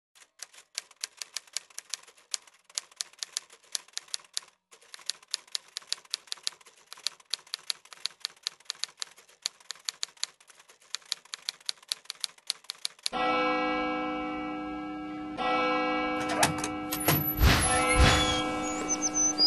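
Typewriter keys clacking at an uneven typing pace, with a short break about four and a half seconds in. After about thirteen seconds the typing stops and music with sustained chords comes in, with sharper strikes near the end.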